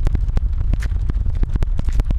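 Wind buffeting the camera microphone: a loud, deep rumble with rapid irregular crackling.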